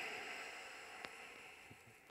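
A long, slow exhalation of deep breathing, the breath hissing out and fading away over about two seconds, with a faint click about a second in.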